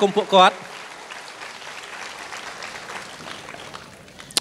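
An audience clapping, a steady spread of applause that slowly dies away toward the end.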